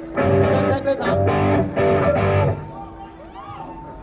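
Amplified electric guitar strumming three short chords in the first two and a half seconds, then dropping away to a faint steady tone.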